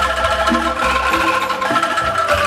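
Angklung ensemble playing a melody: shaken bamboo angklung tubes sounding sustained, shimmering pitched notes over low bass notes that change every half second or so.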